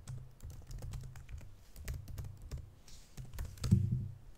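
Typing on a computer keyboard: a quick run of key clicks entering a line of code, with one louder, heavier key press near the end.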